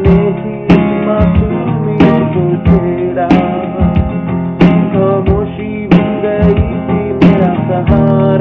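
Acoustic guitar strumming chords for a Hindi Christian devotional song, with sharp strums in a steady rhythm about every two-thirds of a second.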